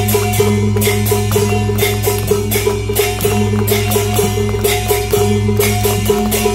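Beiguan gong-and-drum ensemble playing a luogu pattern: hand cymbals clash about twice a second over ringing gongs and quick drum strokes.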